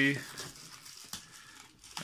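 Clear plastic bubble wrap softly crinkling as a wrapped eyepiece is slid out of its cardboard box, with a faint click about a second in.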